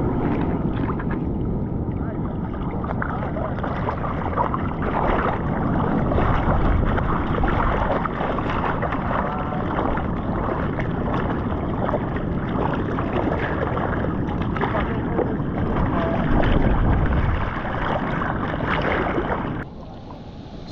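Seawater splashing and sloshing against a surfboard and the paddling arms, heard close up as a surfer paddles through choppy water. It is a steady, irregular splashing that stops suddenly near the end.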